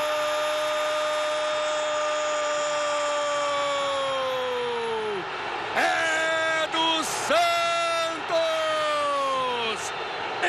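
A Brazilian football TV commentator's drawn-out goal call: one long held "gooool" of about five seconds that drops in pitch as it runs out of breath, then three shorter shouted calls, each sliding downward.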